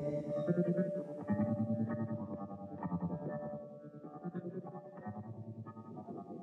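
Guitar played through effects with some distortion, a quiet instrumental passage of repeated low plucked notes that grows fainter toward the middle.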